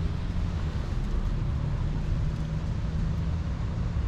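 Steady low background rumble with a faint hum, without any distinct knocks or clicks.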